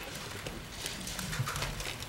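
Room noise with scattered irregular clicks, knocks and shuffling: people moving about as a press conference breaks up.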